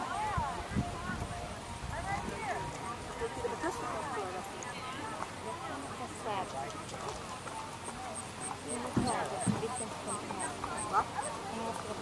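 Indistinct conversation from people close by, with a horse's hoofbeats mixed in.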